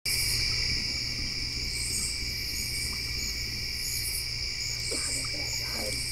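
Chorus of crickets and other insects: two steady high-pitched trills with a softer pulsing above them about once a second, over a low hum. A faint wavering call comes in near the end.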